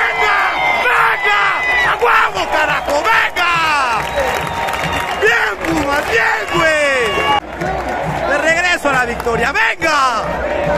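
Football stadium crowd cheering and shouting, many voices at once.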